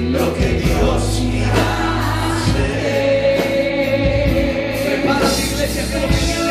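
Gospel worship music: a choir singing over a band, with drums keeping a steady beat.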